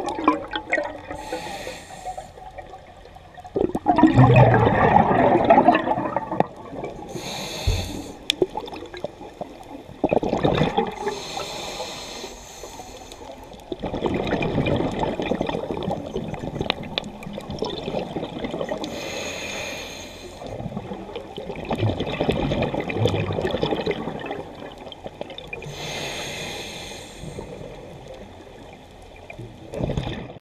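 Scuba diver breathing through a regulator. Short, thin hisses of inhaled air alternate with longer rushes of exhaled bubbles, about one breath every six seconds.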